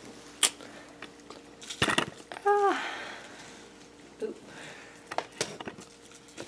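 Scattered clicks and knocks of small objects being handled, with a cluster of them about two seconds in. A short falling vocal sound from a person comes just after, about two and a half seconds in.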